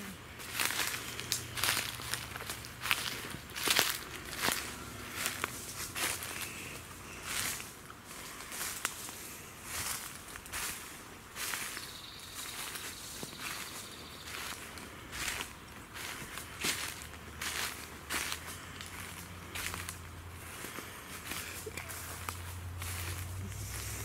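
Footsteps crunching through a thick layer of dry fallen leaves on a forest floor, at a steady walking pace of about one to two steps a second.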